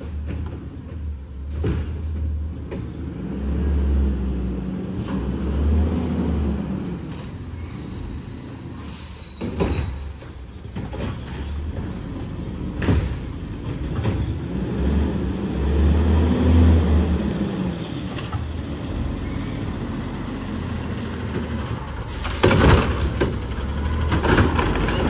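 Autocar ACX Heil front-loader garbage truck with a Curotto-Can arm working carts. The diesel engine revs up and falls back in several swells, the rise in engine speed that drives the hydraulics for the arm. A few short sharp hisses and knocks stand out, the loudest near the end as the truck comes close.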